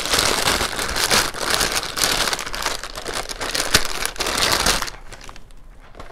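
Plastic mailer bag crinkling and crackling as it is opened and handled by hand, dying down about five seconds in.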